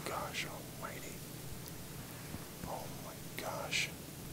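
A man whispering faintly: a few short, breathy sounds spread over the four seconds, the last near the end with a hiss.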